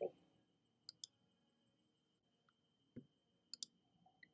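Near silence with a few faint, short clicks: a pair about a second in, a single one a couple of seconds later, and another pair near the end.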